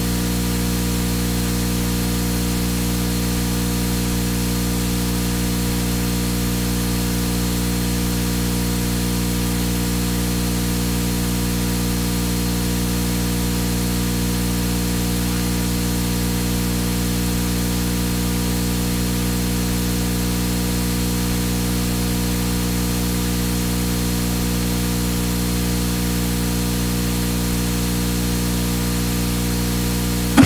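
Steady static hiss with a low electrical hum, unchanging in level throughout.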